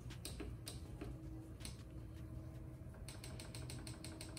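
Faint clicks of buttons being pressed on a Ninja air fryer's control panel while setting the temperature and cook time: a few separate presses, then a quick run of clicks near the end.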